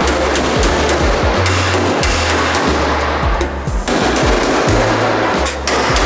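Background music with a steady bass line, over which a body hammer taps repeatedly on the sheet metal of a car door being shaped.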